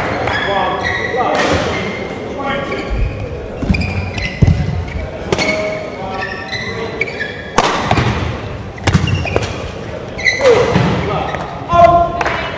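Badminton rally in a large hall: sharp cracks of rackets striking the shuttlecock at irregular intervals, short high squeaks of court shoes on the floor, and dull thuds of footwork.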